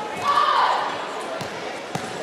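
A single shout with a falling pitch, about a quarter of a second in, echoing in a large hall over background chatter, followed by two short sharp knocks in the second half.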